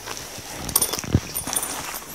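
Zipper of a padded guitar gig bag being pulled open, an irregular run of clicks and rasps with rustling of the bag and a soft knock about halfway through.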